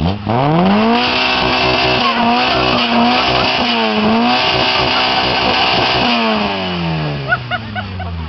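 Car engine and exhaust revved hard from idle: the pitch climbs quickly, holds near high revs for about five seconds with a few short dips, then falls back over the last two seconds. The rev is held for a sound-level measurement taken with a meter at the tailpipe.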